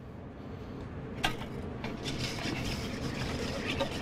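A scoop clinking once against a stainless steel mixing bowl as flour goes in, then a wire whisk beating pancake batter against the steel, scraping and tapping the sides.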